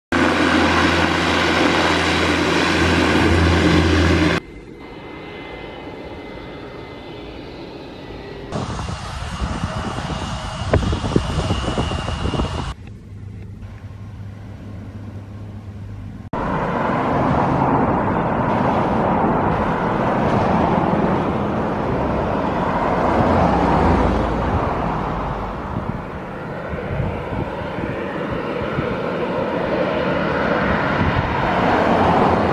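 Turboprop aircraft engines heard in a string of short field recordings joined by abrupt cuts. First comes an Embraer EMB-120's propellers droning steadily at a low pitch. It ends in a steady rushing engine noise from a twin turboprop on approach to land.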